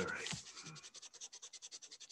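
Pencil eraser rubbed quickly back and forth on paper in rapid scratchy strokes, rubbing out a mistaken pencil line.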